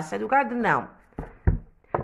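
Speech trails off, then a couple of dull knocks and a click from handling the recording phone and book, the loudest about halfway through.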